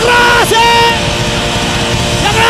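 Rock band playing live on stage. In the first second, two loud held notes of about half a second each stand out over the band; each slides up at the start and drops off at the end.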